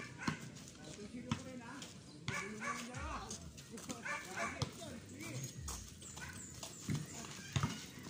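Voices of players calling out on an outdoor court, broken by scattered sharp knocks from a basketball bouncing.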